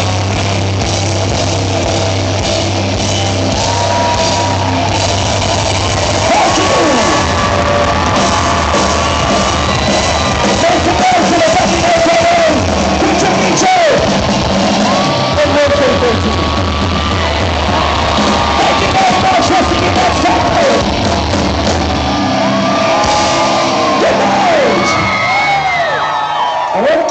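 Loud live rock band playing in a club, with a held low note underneath and audience members yelling and whooping over the music throughout.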